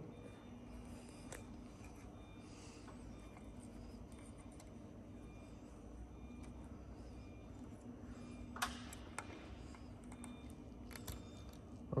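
A few faint metallic clicks and taps of a small open-end wrench working a nut on a gyroplane's rotor-head fittings, over a low steady hum.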